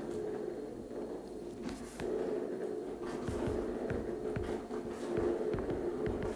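Stylus tips tapping lightly on a tablet's glass screen while writing numbers, a scattered series of short clicks, over a steady background hum.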